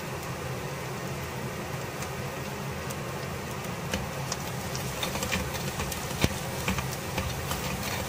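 Chopped onions sizzling in hot oil in a clay pot, over a steady low hum. From about four seconds in, a spoon stirs them, with scattered clicks of the spoon against the pot.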